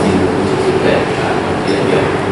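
A man's voice speaking indistinctly in a room, half buried under a loud, steady rushing noise.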